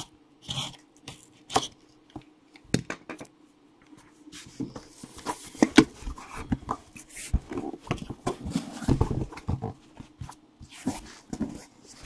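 Box cutter slitting the tape on a cardboard case in several short scratchy strokes, then a denser stretch of cardboard scraping and rustling as the case is turned and its lid pulled open.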